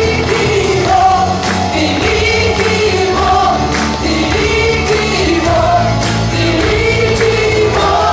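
Live gospel worship song: several singers in chorus over electric guitar, bass and drums, with a steady beat, heard in a large hall.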